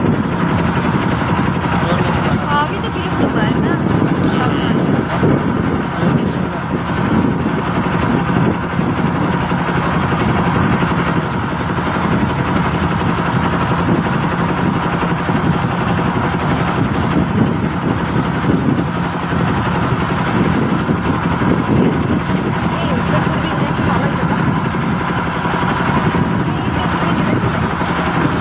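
A boat engine running steadily at cruising speed, a constant loud drone with a steady hum.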